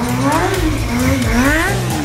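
Kawasaki 636 sport bike's inline-four engine revving up and down repeatedly, its pitch rising and falling about three times in two seconds as the rider works the throttle, with music playing underneath.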